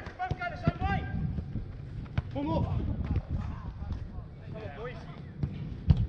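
Players shouting to each other during a five-a-side football game, over sharp thuds of the ball being kicked. The loudest kick comes near the end.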